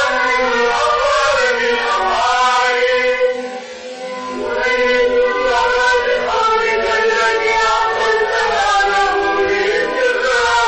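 A vocal trio singing a Moroccan song together, the voices gliding through long sung phrases. The music dips briefly about three and a half seconds in, then swells back.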